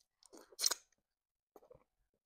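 Close-miked mouth sounds of eating by hand: a quick series of wet smacks and a slurp as a bite of pepper-soup fish goes into the mouth, loudest about half a second in. A few softer lip smacks follow near the end as the fingers are sucked clean.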